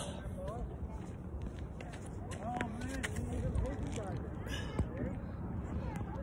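Outdoor court background noise with faint distant voices. A few sharp knocks sound about two and a half and five seconds in.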